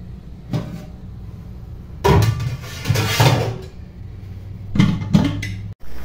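Metal pans being handled: a loud clattering stretch of a bit over a second about two seconds in, then a few sharp knocks near the end, over a steady low hum.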